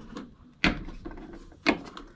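Two sharp knocks about a second apart: a Blue Sea battery main switch being handled and pushed into its opening in an aluminium cover panel, knocking against the metal.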